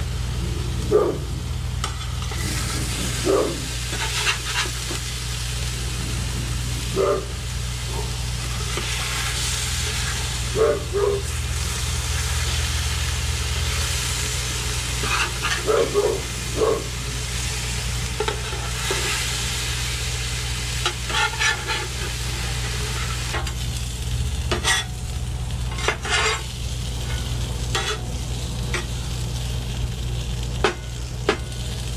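Ground-turkey patties and diced potatoes sizzling on a Blackstone steel flat-top griddle. Metal spatulas scrape and tap on the griddle surface at intervals as the patties are flipped and the potatoes turned, over a steady low hum.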